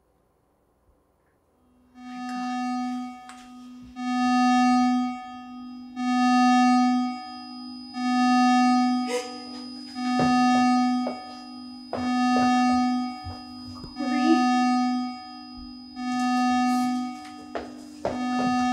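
Electronic alarm tone in long beeps, evenly about once every two seconds, starting about two seconds in over a steady tone: a patient vitals-monitor alert going off. A few short knocks sound between the beeps near the middle.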